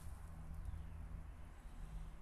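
A thin stream of used engine oil trickling from a funnel into a drum of oil, faint under a low steady rumble.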